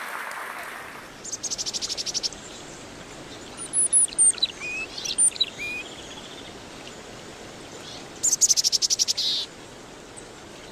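Applause fading out about a second in, then birdsong: a rapid high trill, a few short chirps and whistled slides, and a second rapid trill near the end, over a faint steady hiss.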